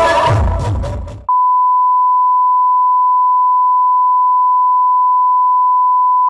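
Music fades out over the first second and cuts off. A steady, single-pitched test tone, the reference tone that goes with colour bars, then runs on unchanged.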